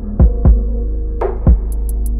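Smooth R&B instrumental: deep, punchy kick drum beats over a low bass and held chords, with two light hi-hat taps near the end.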